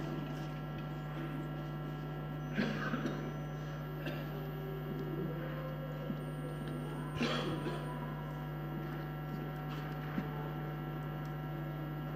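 Steady low electrical hum under quiet room tone, with a few faint brief sounds, including sharp clicks about six and ten seconds in.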